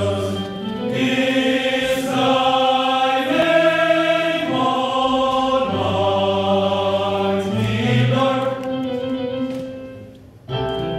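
Men's choir singing sustained chords in several parts; the phrase dies away near the end.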